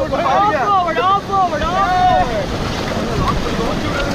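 Whitewater rapid rushing, with wind buffeting the microphone. Voices call out over it for about the first two seconds, then only the water and wind remain.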